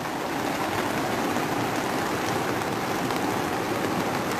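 Floodwater from a swollen river rushing steadily, mixed with falling rain.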